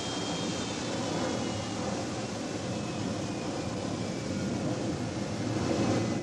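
Jet airliner engines running: a steady rushing noise with a thin high whine that slowly falls in pitch, swelling slightly near the end.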